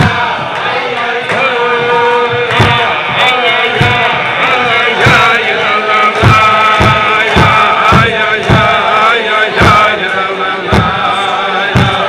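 A group of men singing a Chasidic niggun together in unison, with a steady beat of thumps about every two-thirds of a second keeping time.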